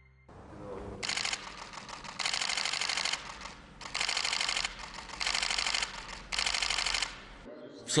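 Press cameras firing rapid shutter bursts during a posed group photo: five quick runs of clicking, each under a second, with short pauses between.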